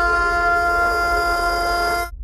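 A single loud, sustained horn-like chord, held perfectly steady and then cut off abruptly after about two seconds.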